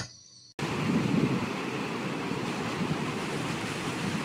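A steady, even rushing noise that starts suddenly about half a second in, after a moment of silence.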